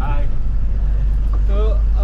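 Truck engine and road noise heard from inside the cab on the move: a steady low rumble.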